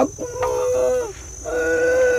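An elderly man's voice drawn out into long, steady held tones, one starting about half a second in and a second one from about a second and a half in.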